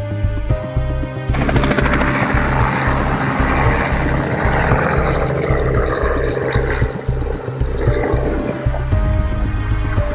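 Background music with a steady beat. About a second in, the rotor and engine noise of a light two-blade helicopter comes in suddenly over the music as it lifts off and climbs away, then fades out near the end.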